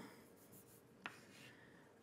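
Chalk writing on a blackboard, very faint, with one sharp tap of the chalk against the board about a second in.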